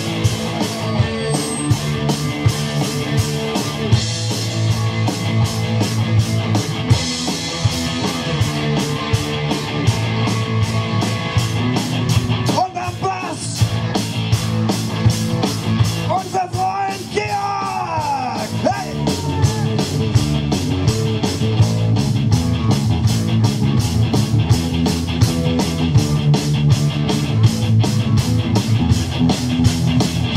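Live hard rock band playing loud: electric guitar over bass and a steady, driving drum beat. About halfway through, guitar notes bend up and down.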